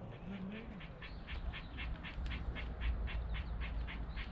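A rapid, evenly spaced series of short, high animal calls, about six a second, starting about a second in and running on, over a steady low rumble. A voice speaks briefly at the start.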